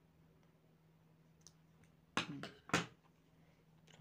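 Small scissors snipping through a strand of crochet thread: two short, sharp sounds a little past halfway.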